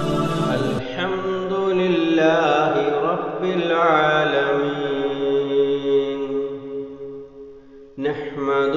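Intro music of melodic vocal chanting: a voice sings a slow, winding line with long held notes and no beat, fading out near the end.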